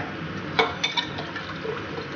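Steady liquid hiss and bubbling from a steel pot of rice and water on the heat, with a few light clinks in the first half as a metal spoon scrapes thick tomato sauce out of a glass jar into the pot.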